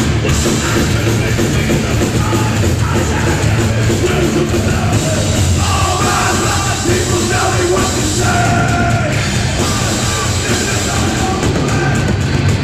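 Hardcore punk band playing live at full volume: distorted guitars, bass and drums, with yelled vocals over the top.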